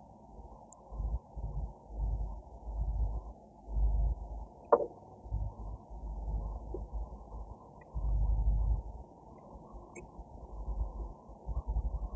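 Root pruning with scissors: one sharp snip nearly five seconds in, among repeated low rumbling bursts of about a second each.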